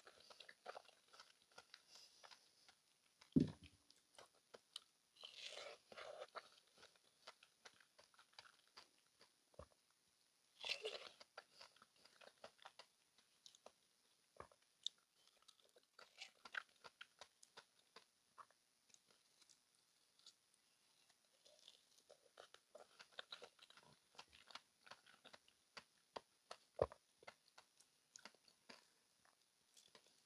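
Quiet, close-miked bites and chewing of white-fleshed dragon fruit: scattered small wet mouth clicks, with a few louder bursts of chewing. A single sharp knock sounds about three seconds in.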